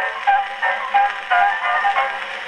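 An 1899 Edison Concert Phonograph playing a 1901 brown-wax Edison Concert cylinder through its horn, giving a short instrumental phrase of about five notes between sung verses.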